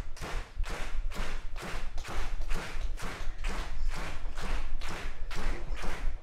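Steady rhythmic clapping, evenly spaced at about three claps a second.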